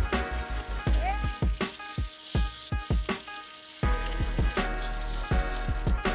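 Butter sizzling in a cast-iron skillet around seared strip steaks, over background music with a steady beat.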